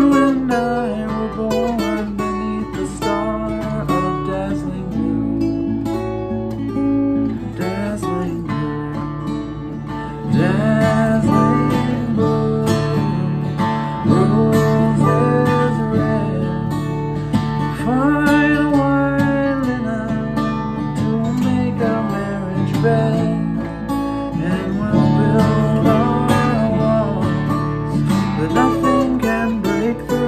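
Acoustic guitar strummed and picked, with a man's wordless singing over it; the playing grows louder about ten seconds in.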